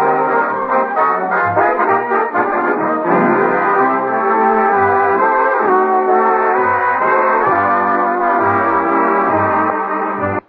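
Radio studio orchestra playing a brass-led musical bridge, with trombones and trumpets over a steady bass beat.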